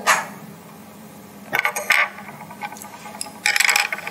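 Small plastic construction-kit parts and a pencil being handled on a tabletop: a few sharp clicks about halfway through, then a short clattering rattle near the end.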